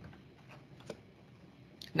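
Quiet room tone with a faint click a little under a second in; a voice starts right at the end.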